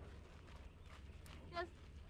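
Faint footsteps crunching on loose gravel, with a short vocal sound about one and a half seconds in.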